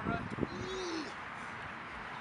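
Faint voices, with one short low coo that rises and falls in pitch about half a second in.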